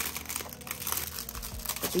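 Clear plastic packaging sleeve crinkling as it is handled, a continuous run of small irregular crackles.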